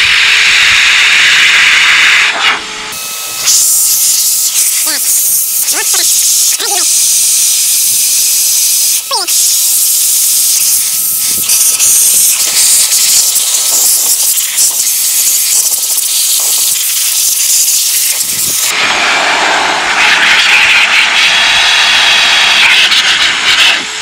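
Vacuum cleaner run as a blower, a loud hiss of air jetting through a narrow nozzle made from a cream bottle into an open PC case to blow out dust. The hiss changes as the jet is moved: brighter and higher from about three seconds in, lower again for the last five seconds.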